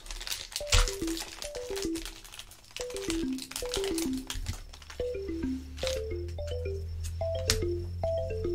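Background music: a light tune of short falling runs on a mallet instrument, repeating about once a second, with a low bass note coming in about halfway through. Under it, the crinkle and tear of a foil booster pack being opened.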